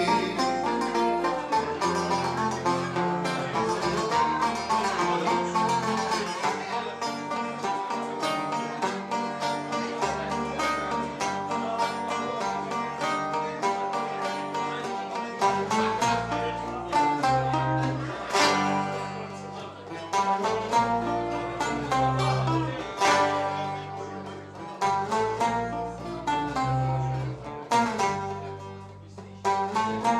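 Live instrumental passage of Greek folk music: an oud playing a quick plucked melody over electric bass guitar notes.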